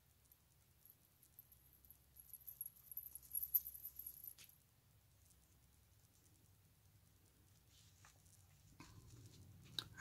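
Faint rustling and light handling sounds of lace and fabric being worked by hand, loudest about two to four seconds in, with a few soft clicks near the end.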